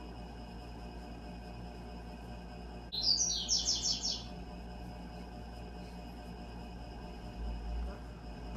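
A bird chirping a rapid run of high notes, about eight in a second, starting about three seconds in, over a faint steady room hum.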